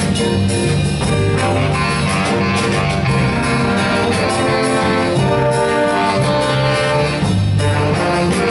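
High school jazz band playing live: a horn section of saxophones, trumpets and trombones sounding held chords over drum kit and guitar.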